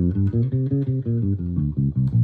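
Electric bass guitar plucked fingerstyle, playing a fast run of single notes, about six a second, from the G blues scale (1, minor 3rd, 4th, sharp 4th, 5th, minor 7th) in one hand position.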